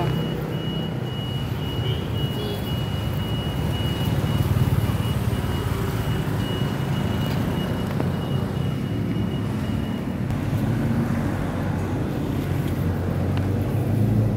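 A motor running steadily with a low hum, with a thin high whine over it that stops about ten seconds in.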